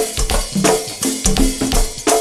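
Live go-go band playing a drum-and-percussion groove over short bass notes, with no singing in this stretch.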